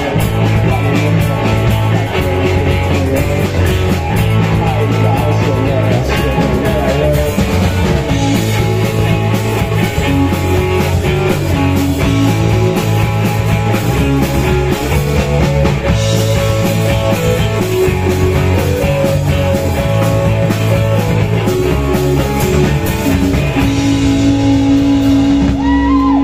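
Live rock band playing, with electric guitars, keyboard, bass guitar and a drum kit keeping a steady beat; a single note is held near the end.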